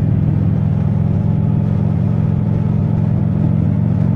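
Motorcycle engine running steadily at cruising speed, with wind and road noise, heard through a microphone tucked inside the rider's helmet cheek pad.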